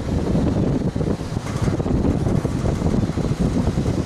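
Wind buffeting the camera's microphone outdoors: a loud, uneven low rumble.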